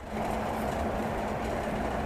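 Steady low rumbling background noise with a faint constant hum, setting in abruptly at the start and holding level throughout.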